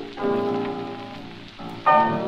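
A 1929 dance band playing a fox-trot from a 78 rpm shellac record, with the record's surface crackle underneath. A held chord fades away, and the full band comes back in loudly near the end.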